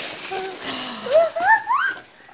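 Packaging rustles, then a high-pitched voice gives a few short squeals, each rising in pitch, in the second half.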